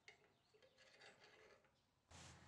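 Near silence with a few faint light clicks and rustles: gloved hands handling a brass knife guard and pins on the tang of a dagger.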